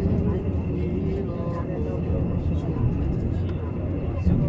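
Passenger train running along the track, a steady low rumble heard from inside the carriage, with people talking in the background.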